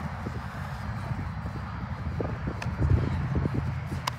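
Wind rumbling on the microphone, with faint scattered footfalls of players running on artificial turf.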